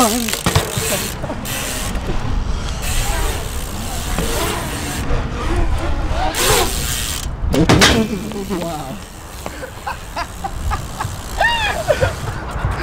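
Dirt jump bike riding a concrete bowl: tyres rolling on the concrete and the rear hub ticking as it freewheels. People call out with drawn-out shouts a few times, loudest around the middle.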